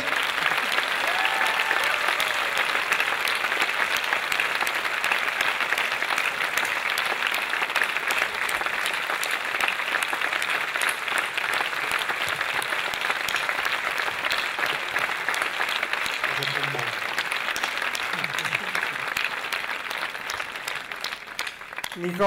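A large audience applauding: a long, dense, steady round of clapping, tremendous, that thins out near the end.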